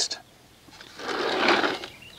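A brief rustling scrape lasting about a second, as cleaning brushes are handled at a wash bucket.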